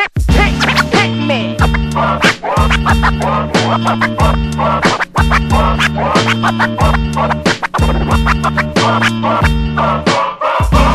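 Hip-hop instrumental beat with a steady bass line and drum pattern, and DJ turntable scratching over it.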